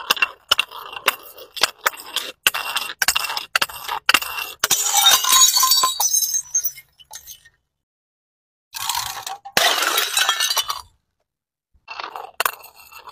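Glass jars packed with water beads tumbling down concrete steps, clinking sharply on each step, then smashing in a dense clatter of glass and scattering beads about four and a half seconds in. After a short silence a second burst of the same clatter follows.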